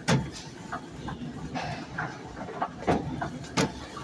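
Irregular clicks, knocks and rattles, about one every half second, over a low rumble, as the recording moves along beneath a high warehouse-style ceiling.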